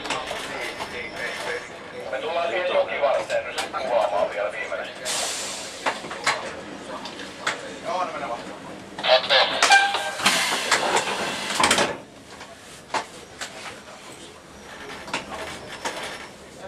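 Voices talking in the cab of a slowly moving Dm7 diesel railcar. A loud burst of hissing noise with a brief tone comes about nine seconds in and stops suddenly at about twelve seconds.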